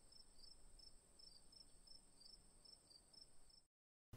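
Faint insect chirping: a steady high hum under short, high chirps about three a second, cutting off abruptly near the end.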